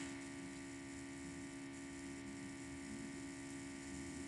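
Steady electrical hum with a faint hiss underneath: the recording's own background noise, with nothing else happening.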